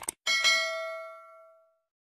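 Two quick mouse-click sounds, then a notification-bell ding of several tones that rings out and fades over about a second and a half: a subscribe-button animation sound effect.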